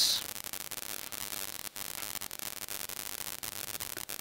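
Steady recording hiss with faint crackling clicks running through it, in a pause between spoken words. A short high hiss at the very start is the tail of the last spoken word.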